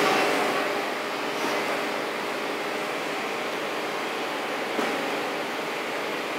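Steady air-conditioning hiss filling a quiet room.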